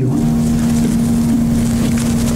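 A steady low hum over an even hiss of background noise.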